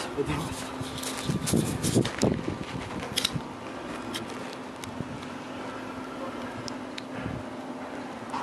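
Steady outdoor air noise with a faint steady hum. Brief rustling and a few sharp clicks come in the first three seconds.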